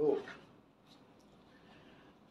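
A woman's voice speaking one short word, then a pause with only faint room tone.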